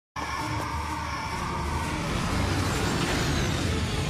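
Cartoon sound effect of a jet-powered flying craft's engines: a steady rushing rumble that swells about two and a half seconds in, with background music under it.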